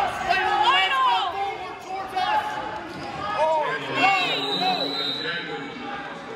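Sounds of a wrestling bout in a gymnasium: short high-pitched squeaks or cries that arch up and down in pitch, one cluster about a second in and another about four seconds in, over the hall's background noise.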